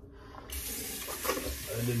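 Water tap running into a sink, turned on abruptly about half a second in and then rushing steadily.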